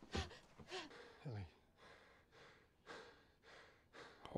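Faint gasps and breaths, with one short vocal sound falling in pitch a little over a second in.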